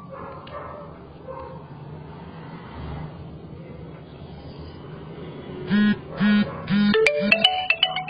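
A phone's message notification tone as the OTP text message arrives: a few short pitched beeps, then a quick rising run of notes near the end.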